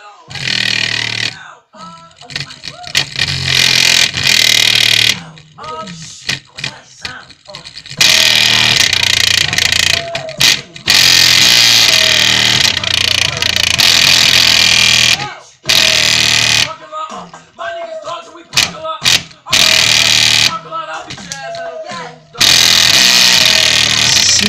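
A small paper-cone speaker driver pushed to extreme excursion on bass-boosted music. The sound is loud, distorted and breaking up, with the strongest stretch from about 8 to 15 seconds in and another near the end, and quieter gaps between.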